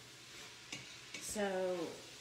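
Sausage and vegetables sizzling faintly in a hot pot while a wooden spoon stirs and scrapes them, with one sharp click about a third of the way in.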